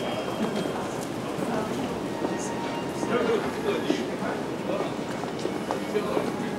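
Indistinct chatter of many passers-by with footsteps on paving.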